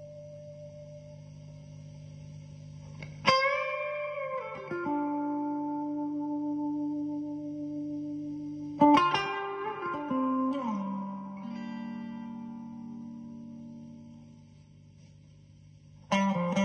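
Single-cutaway electric guitar with humbucker pickups played through big reverb in slow, spacious phrases. A picked phrase about three seconds in and another near nine seconds ring out long, with notes sliding down in pitch. The sound dies away to a faint tail near the end.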